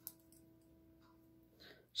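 Near silence with one faint sharp click at the start and a few soft ticks after it: hands handling a knitting needle and a plastic stitch marker.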